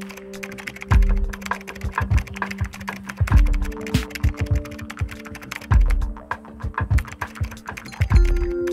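Rapid keyboard-typing clicks, a sound effect keeping pace with a caption typing itself out, over background music with held notes and deep bass beats about every two and a half seconds.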